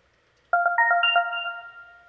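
A short electronic chime: a quick run of about six bell-like notes at several pitches, starting about half a second in and ringing out, fading away by the end.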